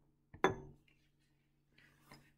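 A glass Erlenmeyer flask clinks during titration: a quick double tap about half a second in with a brief high ring, then quiet handling as the flask is swirled.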